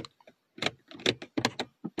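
A car's overhead interior light and its plastic switch being pressed and handled: about six short, sharp clicks at irregular intervals.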